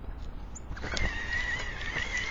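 Droll Yankees Flipper feeder's electric motor whining as it spins the perch ring under a squirrel's weight. A steady, slightly wavering high whine starts a little under a second in, with a few sharp knocks over it.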